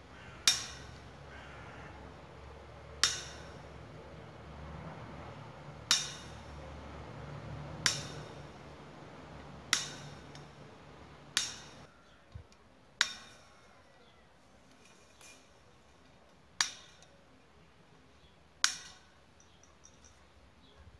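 Galvanized welded wire mesh being cut wire by wire with hand wire cutters: nine sharp metallic snaps, one every two seconds or so, each with a brief ring.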